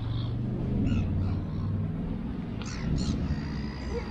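A low steady outdoor rumble, with a few short, high bird calls about a second in and again near three seconds.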